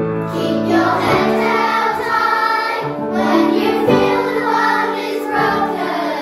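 A children's choir singing together, holding long sung notes.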